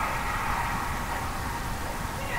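Steady background noise of an indoor ice rink during a hockey game: a low, even hum with no distinct knocks or calls standing out.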